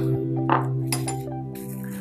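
Background music with steady held tones, and a couple of light metallic clinks about half a second and a second in as a metal meat mallet is set down on the counter.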